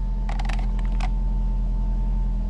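Steady low hum of the parked car's engine idling, with a thin steady whine above it. In the first second comes a quick run of small clicks and creaks from the plastic handheld OBD scanner and its cable being handled.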